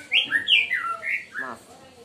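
A songbird singing a loud phrase of clear, whistled notes that glide up and down, stopping about a second and a half in.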